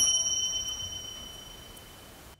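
A single high, bell-like ding that strikes once and rings out, fading away over about two seconds.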